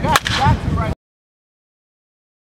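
A baseball bat hitting a pitched ball once, a single sharp hit, in batting practice. The sound cuts off abruptly just under a second later.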